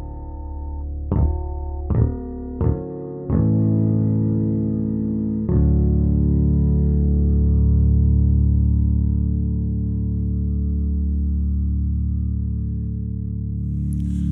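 Fodera Monarch Standard P four-string electric bass: a handful of plucked notes less than a second apart, then a last note plucked about five seconds in and left to ring untouched. It sustains steadily for over eight seconds, resonant for days.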